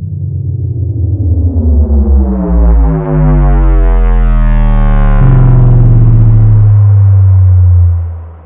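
Synthesized intro sting for a channel logo: a deep bass drone under a stack of tones sweeping upward, growing louder over the first few seconds. About five seconds in it settles into a loud held low tone that fades out at the end.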